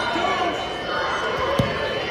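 Overlapping chatter and calls of spectators and coaches echoing in a large sports hall, with one dull thud about one and a half seconds in.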